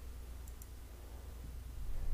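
Two short, faint clicks about half a second in, a tenth of a second apart, over a steady low hum.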